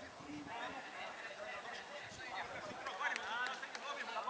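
Faint, distant voices of players calling and shouting to each other on a football pitch during play, a little busier in the second half.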